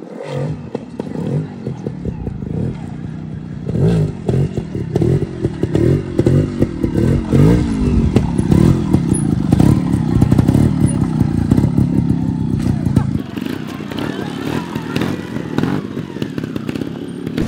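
Trials motorcycle revving up and down over and over as the rider pulls wheelies, with some clatter from the bike.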